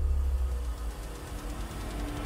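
Low cinematic rumble fading out, the tail of a dramatic boom in the closing logo sting's sound design.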